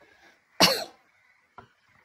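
A woman coughs once, sharply, about half a second in, after a faint breath. A faint click follows near the end.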